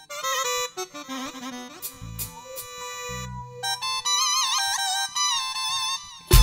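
Electronic keyboard playing a free solo lead of quick, ornamented notes with bends and wavering pitch, showing off. A few deep bass or drum hits sound about two to three seconds in.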